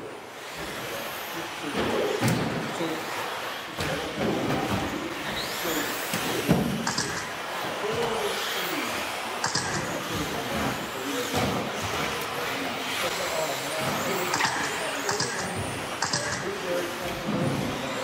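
A pack of electric 2WD RC buggies racing together: the motors and gears whine, rising and falling over and over as the cars accelerate and brake, with sharp knocks from cars landing jumps and striking the track.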